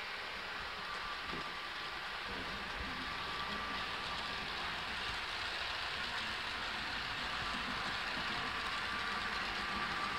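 Model electric train, a locomotive with double-deck coaches, running along the layout's track: a steady rolling hiss with a faint whine, growing slightly louder as it passes.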